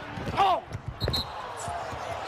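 Basketball dribbled on a hardwood court, a few sharp bounces, with a short shout from a player about half a second in.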